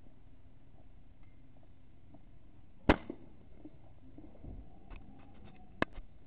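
A .22 air rifle fires with a sharp crack about three seconds in, followed by a short ring. A few light clicks follow, then a second, slightly quieter sharp crack just before the end.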